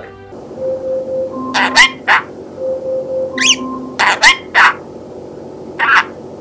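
Small green pet parrot giving short, sharp chirps and whistles in two quick clusters and once more near the end. Steady held notes of background music play underneath.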